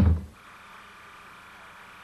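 The last of a TV station promo's voice and music cuts off just after the start, leaving a faint steady hum with a thin high buzz: the background noise of an old television recording between broadcast segments.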